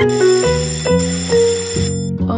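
School bell ringing in two bursts, with a short break about a second in, over background music.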